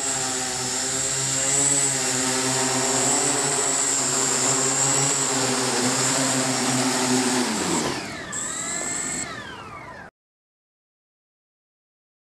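The eight brushless electric motors and propellers of an OFM GQuad 8 octacopter drone hover with a steady multi-toned hum. About three-quarters of the way through, the pitch falls and the level drops as the motors slow down, then the sound cuts off suddenly.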